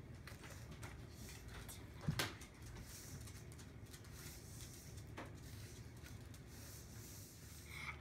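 Faint stirring of crushed Oreo cookies and cream cheese with a spatula in a stainless steel mixing bowl, with a few light knocks of the spatula, the clearest about two seconds in and another about five seconds in.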